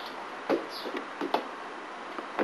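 Two light knocks, a little under a second apart, over a faint steady background hiss.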